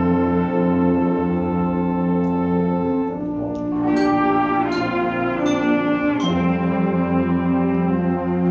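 High school band of saxophones, trumpets and trombones with drums playing sustained chords, with a run of sharp accented hits between about three and a half and six seconds in.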